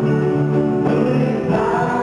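Live worship music: a man singing into a microphone, with other voices and instrumental accompaniment.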